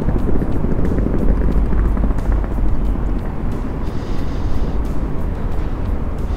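Steady low rumble of street noise heard from the sidewalk, with no single event standing out.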